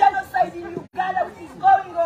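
Protesters chanting a slogan, several voices shouting together, with a short break in the sound about a second in.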